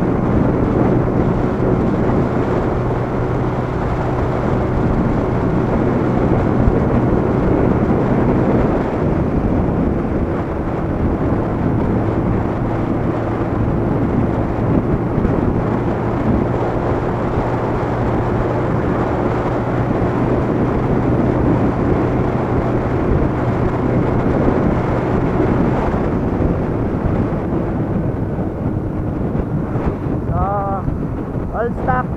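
Kawasaki Bajaj CT100's small four-stroke single-cylinder engine running at a steady cruising speed, under continuous wind and road noise. The steady engine hum drops out for a moment about nine seconds in and fades away about four seconds before the end.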